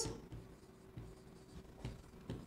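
Faint marker strokes on a whiteboard, with light taps about a second in and again near the end.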